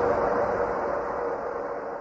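Sustained droning background music bed, held tones with no beat, fading out steadily.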